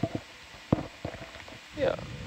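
Low background hiss broken by a single short, sharp click about three-quarters of a second in, with a few fainter ticks; a voice says "yeah" near the end.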